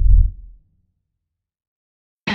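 A single deep, low boom sound effect that swells up and fades out within about half a second.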